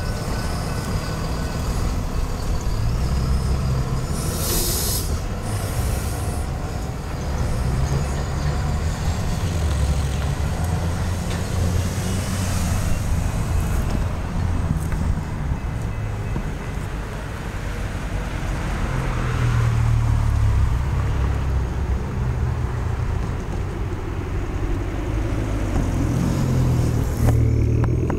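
Road traffic moving off across a railroad crossing: a flatbed truck's diesel engine running low and pulling away, with two short hisses of air about five seconds in, then cars passing with a steady low rumble.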